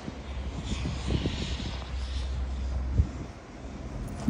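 Outdoor town-centre ambience: a steady low rumble with a faint hiss above it, broken by a few soft knocks and one sharper knock about three seconds in.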